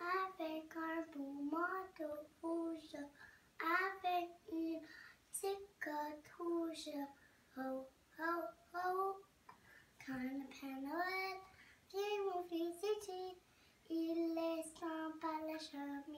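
A young child's solo singing voice, unaccompanied, high-pitched, in short phrases with brief pauses between them.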